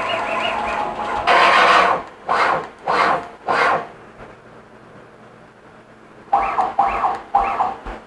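FoxAlien CL-4x4 CNC router's stepper motors jogging the axes: a steady whine for about the first second, then a louder rush of movement and three shorter swelling moves. After a quieter pause come three short pitched jog steps near the end.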